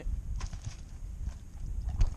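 Handling noise as a redfish is lifted out of a landing net on a boat deck: a few light knocks and taps over a low rumble of wind on the microphone.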